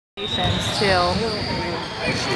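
Voices echoing in a gymnasium, with one drawn-out call rising and falling in pitch about a second in, over a faint steady high-pitched whine.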